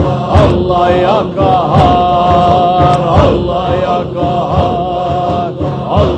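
Men chanting a Sufi zikr, repeating the names of God in a steady rhythm, with long held, wavering sung notes over the chant.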